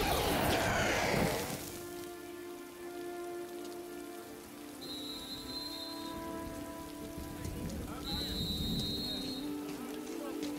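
Steady heavy rain falling, opened by a loud burst of noise from a sci-fi energy effect that fades out over the first second and a half, with held tones of a quiet score underneath.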